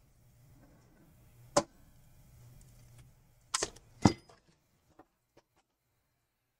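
A few sharp clicks and taps of small hand tools being handled at a repair bench: one about a second and a half in, two close together a little before and after four seconds, then a few fainter ticks. A faint low hum sits underneath.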